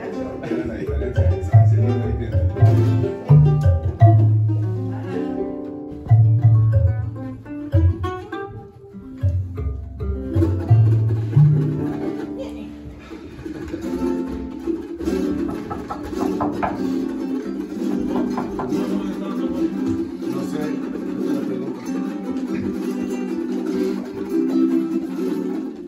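A group of small acoustic guitars strumming chords in a steady rhythm, with a marímbula, a box of plucked metal tongues, playing deep bass notes that change every second or so. About halfway through, the bass notes stop and the strumming carries on alone.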